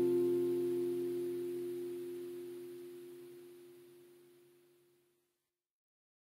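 The last chord of an acoustic guitar accompaniment ringing out and fading away at the end of the song, dying out about four to five seconds in.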